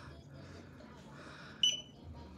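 A single short, high-pitched electronic beep about one and a half seconds in, over quiet room noise.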